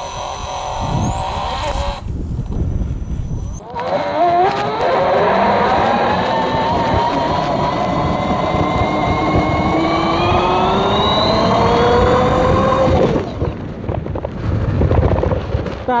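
A homemade 15 kW electric bike's brushless motor and speed controller whining under hard acceleration, several tones climbing steadily in pitch together from about four seconds in until they cut off near thirteen seconds. After that comes a low rumble and rattle of the bike over a rough dirt road.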